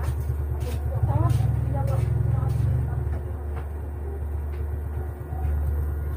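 A steady low rumble, a little louder between about one and three seconds in, with faint voices over it.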